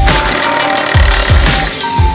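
Electronic dance background music with deep, booming kick drums about twice a second under a stepping synth melody.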